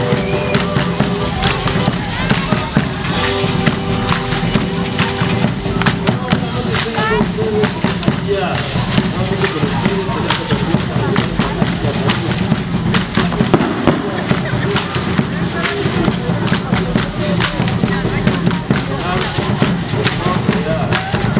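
Traditional festival dance music with steady drumming and the dense crackle of many dancers' hand rattles, over the voices of a crowd.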